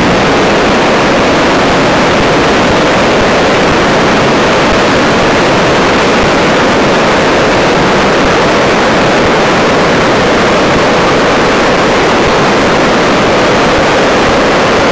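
A flood-swollen river rushing, a loud, steady roar of turbulent brown water.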